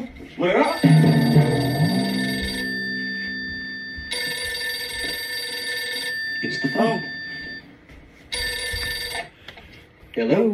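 A telephone ringing in three bursts, a long one about a second in, another around four seconds and a short one near nine seconds, with brief shouted voices between the rings.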